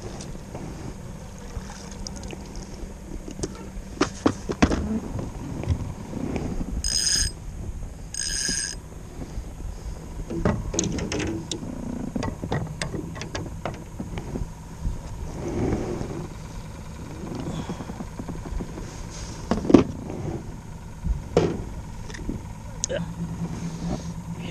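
Scattered clatter and knocks of fishing gear and a landing net being handled in a small boat, the sharpest knock about twenty seconds in. Two short, high electronic beeps sound about a second and a half apart, around seven seconds in.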